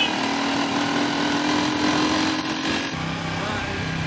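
Small motorcycle engine running under way with a passenger aboard, its pitch creeping up and then dropping suddenly about three seconds in, over wind and road noise.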